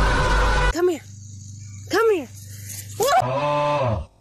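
A White's tree frog giving three short squawking calls about a second apart, each rising and then falling in pitch.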